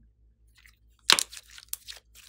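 A lump of yellow slime squeezed and folded by hand, giving a sharp crackling squelch about a second in, then a few smaller crackles.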